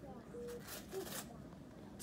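Faint rustling of clothing and a wrapper being handled as a garment is taken off, coming in short soft bursts within the first second or so.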